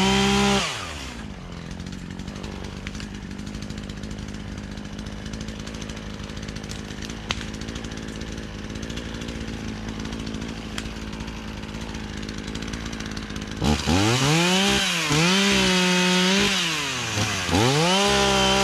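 ECHO CS-450P two-stroke chainsaw. It drops from high revs to a steady idle within the first second and idles for about thirteen seconds. Then it goes to full throttle and cuts, its engine note sagging and recovering under load.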